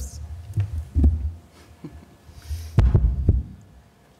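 Handling noise on a tabletop gooseneck microphone as it is grabbed and moved across the table: two bouts of deep thumping and rumbling with a few sharp clicks, one about half a second in and one near three seconds.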